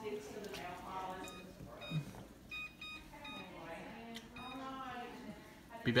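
Electronic kitchen timer beeping as its buttons are pressed to set twenty minutes for the covered rice to simmer: several short, high beeps over about two seconds, with quiet talk underneath.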